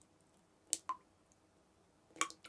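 Two faint, short clicks, one just after the other about three-quarters of a second in, over near silence.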